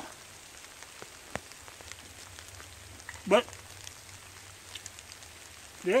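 Light drizzle falling steadily, with a few faint ticks of individual drops.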